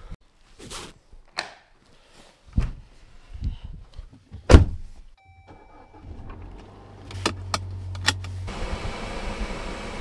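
Getting into and starting a car: rustling and clicks of handling, then a loud thump of a car door shutting about four and a half seconds in. A short electronic chime and the engine starting follow, and it settles into a steady low engine hum. Near the end an even rush of fan and road noise joins as the car moves off.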